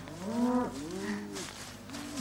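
Cows mooing: two long calls one after the other, each rising and then falling in pitch.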